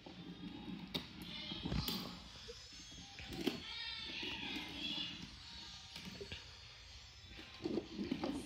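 Wooden toy cars and trains knocking and clicking on wooden train track as they are pushed along, with a child's soft, wavering humming or vocalizing over it.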